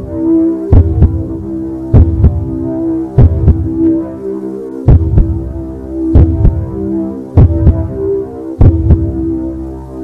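Heartbeat sound effect of the film's soundtrack: a double thump, lub-dub, repeating about once every 1.2 seconds over a steady low droning hum.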